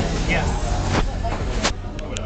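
Indistinct voices over a steady low hum, with two sharp clicks, one about a second in and another a little after a second and a half.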